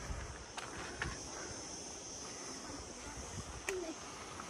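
A steady, high-pitched chorus of insects, with a few scuffs of footsteps on dry, sandy rock.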